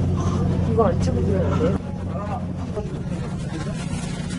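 A steady low hum, a little quieter after the first two seconds, with faint voices over it early on.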